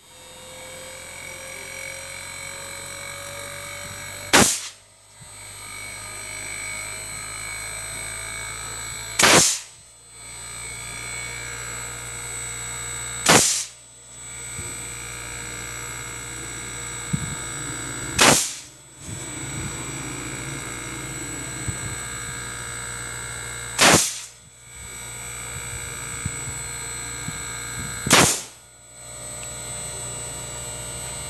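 LG inverter air conditioner running on the bench with its compressor and outdoor fan going: a steady electrical hum and high whine, with one faint tone rising slowly in pitch over the first seven seconds. A sharp, loud crack cuts in every four to five seconds, six times, each followed by a brief drop in the hum.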